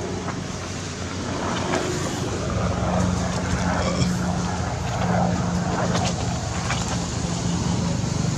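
A motor engine running steadily nearby, a low hum that grows louder about two and a half seconds in.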